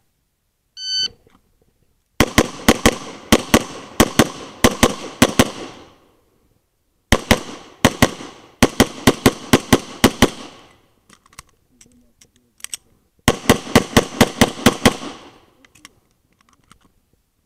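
A shot-timer start beep about a second in, then a Tanfoglio Stock III pistol fired in three fast strings of several shots a second, separated by pauses of about one and three seconds.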